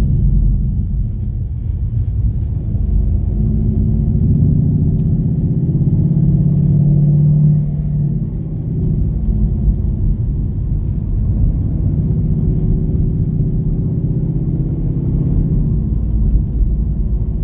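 Ford Mustang GT's V8 engine heard from inside the cabin while driving, a low drone over road rumble. The engine note builds for a few seconds, drops off abruptly about eight seconds in, then picks up again.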